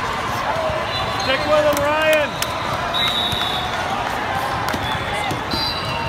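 Hall noise from an indoor volleyball tournament: volleyballs being hit and bouncing, with players' voices calling across the courts.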